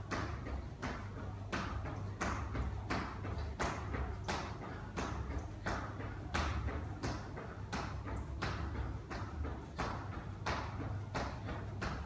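Sneakered feet landing on a tiled floor in steady rhythmic jumping jacks, about one and a half landings a second.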